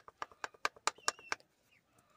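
A quick series of sharp metallic clicks, about ten in the first second and a half, from a removed Volvo XC70 lower ball joint being wobbled by hand. It is the stud knocking in its worn, loose socket, the play that marks the joint as bad.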